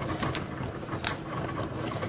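Small metal craft spatula scraping under vinyl stickers on a plastic Cricut cutting mat, with a few sharp little clicks and taps, one about a quarter second in and another about a second in.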